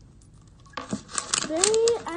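A voice exclaiming "so satisfying" from an edited-in meme clip, starting just under a second in after a quiet moment, its pitch rising at the end.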